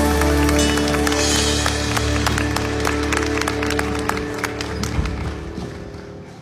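A live band's final chord held and ringing out, its low bass dropping away about five seconds in and the whole fading, while the audience claps.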